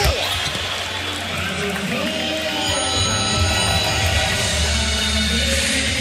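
Arena crowd noise under music playing over the PA, with a single sharp knock right at the start.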